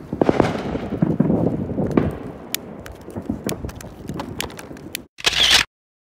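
Firecrackers and fireworks going off in a rapid, irregular string of sharp cracks over a rumbling crackle. About five seconds in, a short, loud, harsh burst cuts off suddenly.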